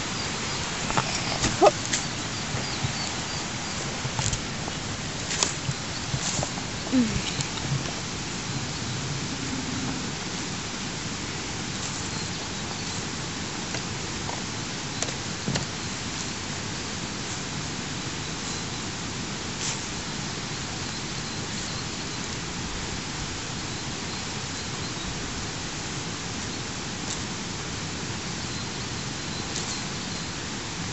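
A steady, even hiss with scattered soft clicks and brief faint sounds, mostly in the first several seconds.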